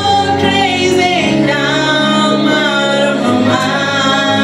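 A woman singing a gospel song into a microphone, her melody gliding over steady, sustained low notes of a backing track.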